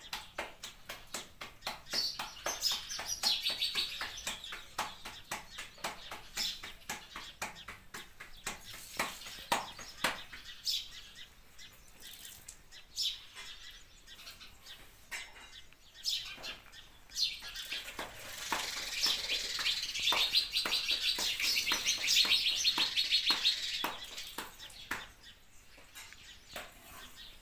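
Bajra millet dough being slapped between the palms to shape a rotla: a long run of short, quick pats. Birds chirp over it, loudest in a stretch about three quarters of the way through.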